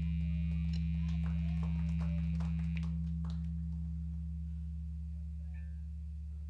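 Steady low mains hum from the stage amplifiers and PA left on after the song, with a faint high whine that fades out about three seconds in and a few scattered clicks; the whole sound slowly dies away.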